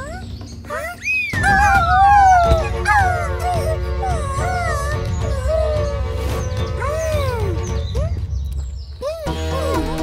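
Cartoon background music with high, gliding wordless cries from a cartoon character, including a long falling wail about a second in.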